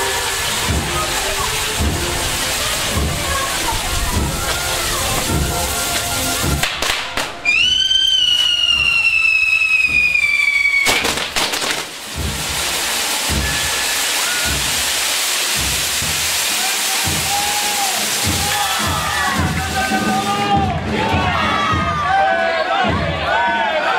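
Fireworks going off close by: a steady crackling hiss with repeated low bangs. About seven seconds in, a long whistling firework sounds for some three seconds, sliding slowly down in pitch before it cuts off sharply, and then the crackling and bangs resume.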